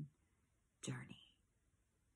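A woman's voice speaking one quiet word about a second in, otherwise near silence: room tone.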